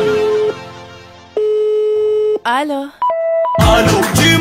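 An Algerian pop song breaks off about half a second in. In the gap come a steady electronic tone, a short gliding pitched sound, and a brief telephone-like beep. The full beat comes back in just before the end.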